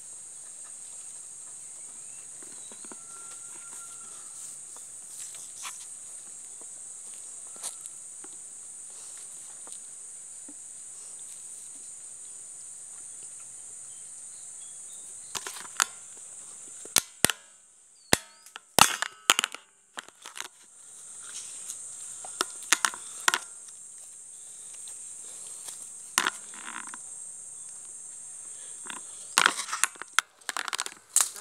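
A steady high-pitched insect drone that fades out briefly past the middle, broken by sharp cracks and snaps: a loud cluster about halfway through and more scattered ones later.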